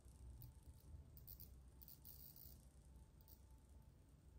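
Near silence: the SCX24 micro crawler's Furitek Komodo brushless motor, running in FOC mode at crawl speed, is barely audible, nice and quiet with no stutter, with a few faint high hisses.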